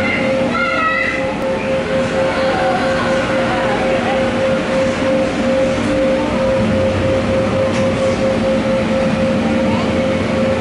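Steady rush of an electric blower fan with a constant whine, the air stream that keeps the balloons flying in a netted balloon enclosure. A child's voice is heard briefly in the first second.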